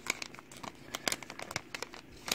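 Foil Pokémon booster pack wrapper crinkling with irregular crackles as it is handled and torn open.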